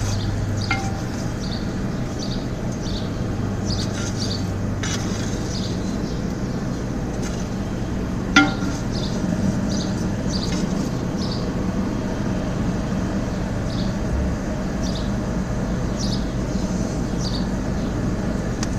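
Coke forge's air blower running with a steady hum while a steel poker breaks up and shifts coke on top of the fire, giving a few sharp metallic clinks. The loudest clink comes about eight seconds in.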